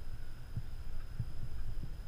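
Wind buffeting an action camera's microphone: a low rumble with a few soft, irregular thumps.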